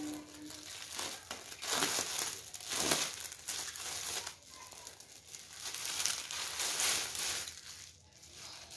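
Thin clear plastic wrapping crinkling and rustling in irregular bursts as it is handled and pulled open around a folded saree.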